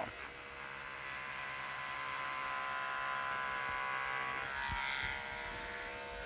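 Wahl Stable Pro electric clipper buzzing steadily as it shaves deer hide hair down to the bare skin. About four and a half seconds in, the buzz thins and there are a couple of soft knocks.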